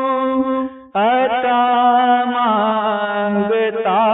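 Naat recitation: a man's voice singing long, drawn-out wordless notes over a steady drone. The sound fades and cuts out briefly just before a second in, then comes back.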